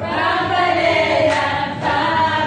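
A group of people singing together, several voices on held, sliding notes, with a new phrase starting right at the beginning.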